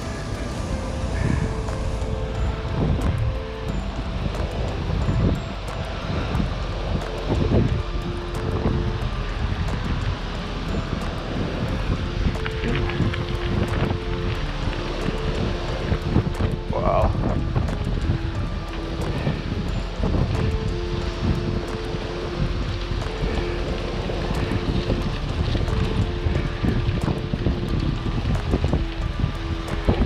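Wind rumbling on the microphone of a moving bicycle, with music playing under it in repeating phrases of held notes.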